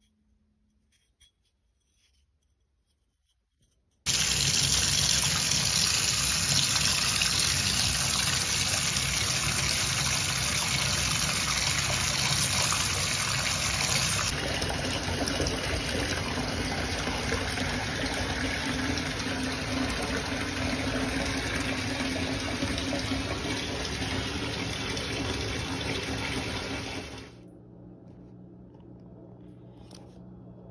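Water running from a tap into a bathtub, a steady loud rush that starts suddenly about four seconds in and drops away shortly before the end.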